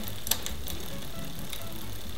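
Bicycle chain running over the rear cassette and derailleur pulleys as the crank is turned by hand, with a light click. The rear derailleur's cable adjuster is being wound out until the chain starts wanting to climb onto the next larger cog: a sign that the cable tension is set just past correct.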